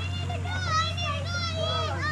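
Children's high-pitched voices calling out and shrieking as they play in a swimming pool, over a steady low hum.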